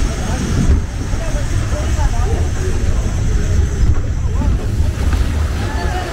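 Log flume boat moving through water, with water rushing and splashing at its bow over a steady low rumble of wind on the microphone.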